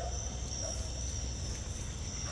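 Steady, high chorus of night insects such as crickets, over a low rumble.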